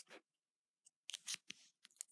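Faint felt brush-pen tip drawing a few short strokes across a paper sticky note: one just after the start, then a cluster about a second in.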